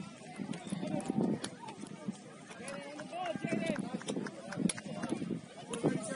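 Indistinct talking of several people at once, with no clear words, and scattered sharp clicks through it.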